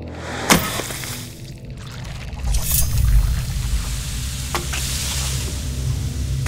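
Horror trailer sound design: a low, rumbling drone under hissing noise, with a sharp hit about half a second in and brief swishes a little later.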